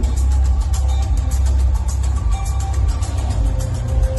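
Loud music with a heavy bass and a steady beat.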